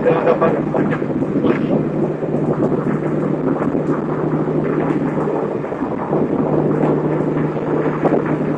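Mitsubishi 3000GT VR-4's twin-turbo V6 running at steady freeway speed, heard from inside the cabin: a constant low engine drone under heavy road and wind noise.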